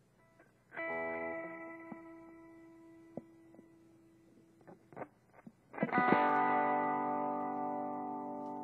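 Electric guitar with DiMarzio pickups played through an amplifier. A chord is struck about a second in and left to ring down, a few short plucks and clicks follow, and a louder strummed chord near the end rings on.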